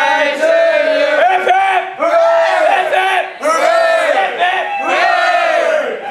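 A crowd of voices singing together in long, held notes, loud and rough.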